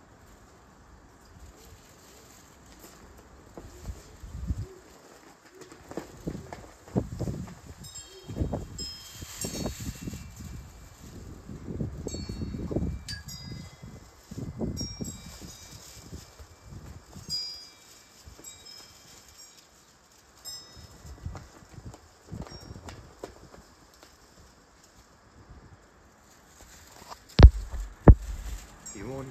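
Wind buffeting the microphone in irregular gusts, with light, high metallic pings scattered through it, and one sharp knock near the end that is the loudest sound.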